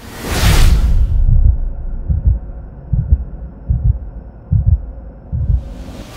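Channel logo ident sound effects: a whoosh at the start, then deep bass thumps roughly once a second over a low droning hum, and a second whoosh building near the end.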